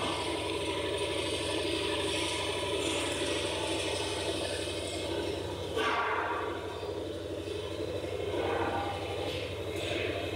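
A steady mechanical hum and whirr, with a brief louder rush about six seconds in and a smaller one near the end.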